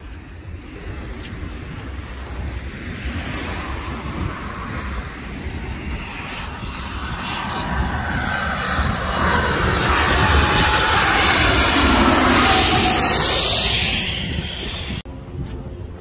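A small jet aircraft flying in low overhead on its landing approach. Its engine noise builds steadily to a loud peak about twelve seconds in, with a whine that falls in pitch as it passes. The noise then drops away quickly.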